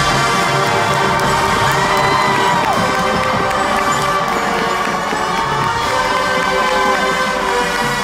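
Marching band holding long sustained chords while a crowd cheers, with two long rising-then-falling whoops over it, one in the first few seconds and one in the back half.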